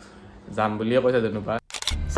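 A man speaking, then near the end a short camera-shutter click used as a transition sound effect at a cut.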